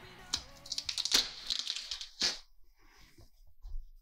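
A taped-down MDF routing template being pulled off a wooden guitar body: tape peeling and wood scraping, with two sharp clicks, about one and two seconds in.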